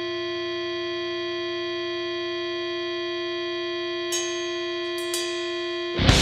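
Intro of a metalcore track: a steady held chord of ringing, bell-like electronic tones that does not change in pitch or level. Near the end come two short ticks about a second apart.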